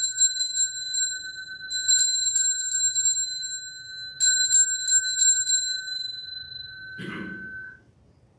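Altar bells rung at the elevation of the chalice: three bursts of rapid jingling strikes, about two seconds apart, the chime left ringing and dying away near the end. A short knock comes just before the ringing fades out.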